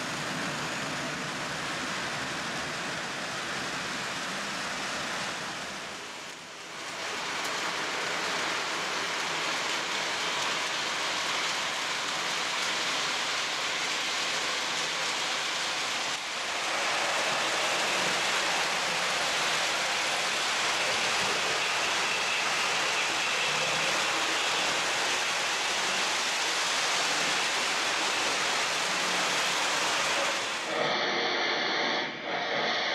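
O gauge three-rail model trains running on the layout: a steady rushing rumble of wheels on track. It dips briefly about six seconds in and comes back a little louder from about sixteen seconds in.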